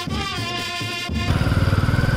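A small brass band of saxophones and trumpets playing a melody, cut off about a second in by a motorcycle engine running with a fast, even pulse, louder than the band.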